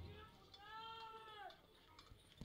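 Near silence between the announcer's counts, with one faint call about half a second in that rises and then falls in pitch, just under a second long.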